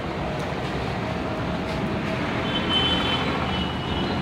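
Water running down a sandstone fountain and splashing into its basin, a steady rushing. A faint high, thin tone joins in about two and a half seconds in.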